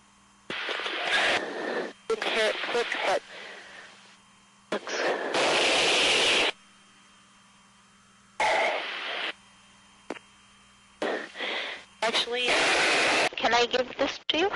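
Flight-deck intercom cutting in and out in about six bursts of one to two seconds, each starting and stopping abruptly, carrying hiss, breath and indistinct voice from the crew's helmet microphones. A faint steady hum fills the gaps between bursts.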